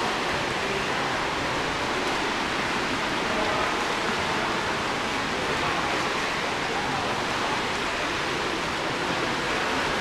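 Steady, even wash of splashing from many swimmers doing front crawl in an echoing indoor pool hall, with faint voices in the background.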